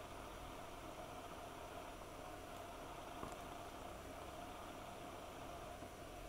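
Quiet room tone: a faint steady hiss with a low hum, and one small click about three seconds in.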